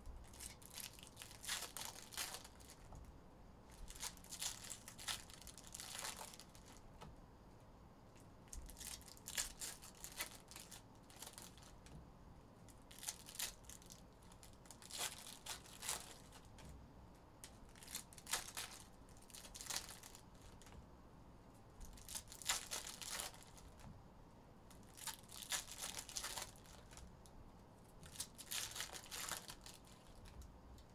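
Foil trading-card pack wrappers being torn open and crinkled by hand, in short bursts of crackling every couple of seconds.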